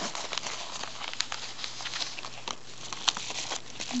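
A paper mailing envelope being handled and crinkled, with irregular crackles and rustles.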